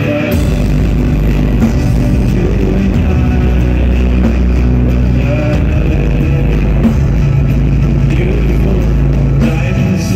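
A live band playing loudly, with drums being struck and a heavy bass line, heard from the audience.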